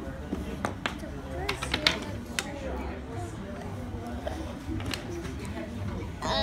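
Wooden toy trains and track pieces clicking and clacking as a child handles them: a scatter of sharp clicks, the loudest about two seconds in, over indistinct background chatter.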